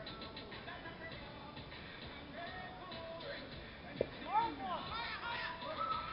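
A pitched softball meeting bat or catcher's mitt with a single sharp smack about four seconds in. Right after it come several shouts that rise and fall in pitch, over a steady background of voices.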